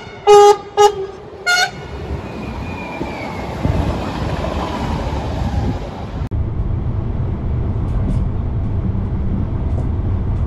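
Train horn sounding three short, loud two-tone toots, from an approaching NS VIRM double-deck intercity train, followed by the train's rumble growing louder as it nears. About six seconds in the sound changes abruptly to a steady low rumble of a train running.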